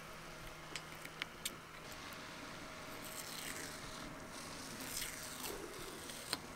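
Faint scraping and peeling as a flathead screwdriver lifts a painted strip out of a pickup's roof channel. A few small clicks come in the first second or so, then soft scratchy tearing.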